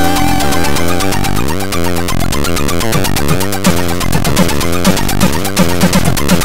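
Four-channel AHX chiptune played in Hively Tracker: square- and pulse-wave voices with repeated quick pitch sweeps over a steady bass pulse. From about halfway through, rapid noise-channel drum hits join in.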